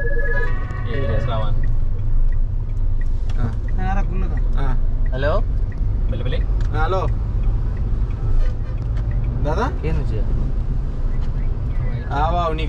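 Steady low rumble of a Renault car's engine and tyres, heard inside the cabin while driving in traffic. Short stretches of voice come over it every second or two.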